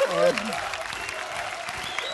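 Studio audience applauding, with a short voice at the start.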